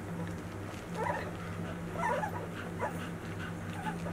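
Nursing white Swiss shepherd puppies, 13 days old, whimpering in short high squeaks, about four of them, over a steady low hum.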